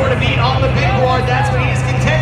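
Echoing arena announcer's voice over the public address, with a steady low drone underneath from a monster truck engine idling after being refired.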